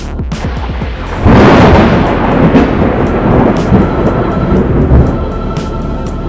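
A loud thunder crash breaks in about a second in and rolls on, slowly fading, over background music with a steady beat.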